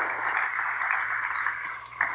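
Congregation applauding, a steady patter of many hands that dies away near the end.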